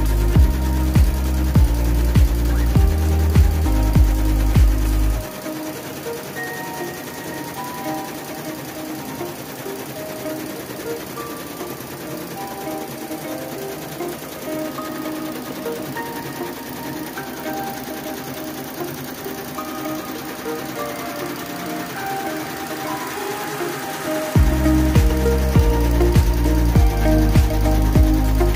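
Multi-head embroidery machine running steadily, its needles stitching in a rapid mechanical clatter. Background electronic music plays over it, and its heavy bass beat drops out for about twenty seconds in the middle, leaving the machine clearer.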